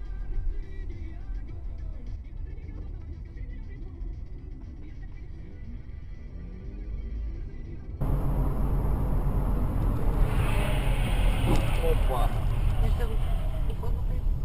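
Dashcam audio from inside a car: a low engine and road rumble with a radio playing faintly. About halfway through it cuts to louder tyre and wind noise, with a person's voice near the end.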